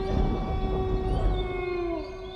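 A long howl held on one pitch, falling in pitch and fading near the end, over a low rumble.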